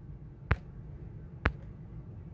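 Two short, sharp taps about a second apart: a fingertip tapping the tablet's touchscreen while switching between apps.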